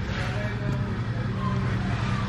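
Steady low hum of background noise, with a few faint brief tones above it.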